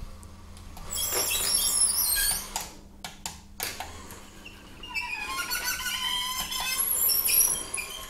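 Battery-powered smart chain-blind motor running, driving the roller blind's bead chain with a high, wavering whine. It runs in two stretches, from about a second in and again from about five seconds in, with a few clicks and a quieter gap between them.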